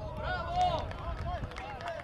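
Men's voices shouting and calling across an outdoor football pitch, several at once, over a low rumble.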